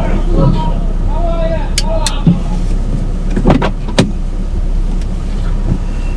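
A car engine idling steadily, with loud shouted commands early on and a few sharp knocks and clicks, the loudest about three and a half to four seconds in.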